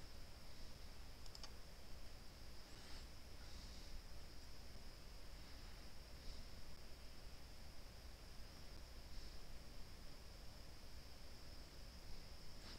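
Very quiet room tone with a faint steady hiss. There are a few soft computer mouse clicks in the first three seconds.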